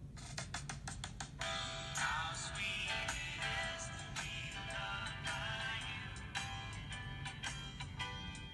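A recorded song played from a smartphone's small speaker, thin and tinny with little bass: a few sharp notes open it, and a singing voice comes in about a second and a half in.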